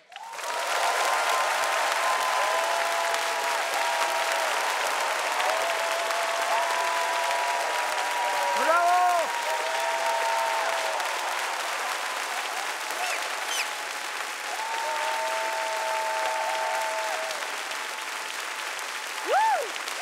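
Studio audience applauding and cheering at the end of a song, starting suddenly and continuing steadily, with voices whooping over the clapping.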